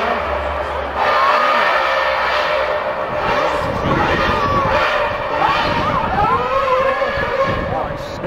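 Formula One car's 2.4-litre V8 engine revving hard, its pitch rising and falling again and again as it runs along the street, over crowd and voice noise.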